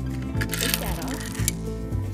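Background music plays throughout. About half a second in comes a clatter lasting about a second, small plastic Lego pieces spilling and rattling onto a wooden tabletop.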